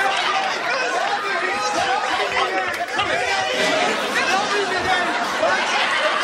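Several voices talking over one another at once, a continuous babble with no single clear speaker.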